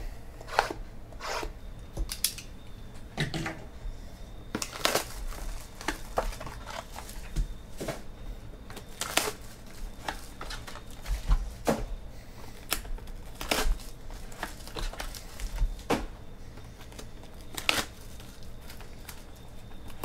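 Sealed cardboard trading-card boxes and their plastic wrap being handled and torn open, with foil card packs rustling as they come out: a string of short crinkles, taps and clicks.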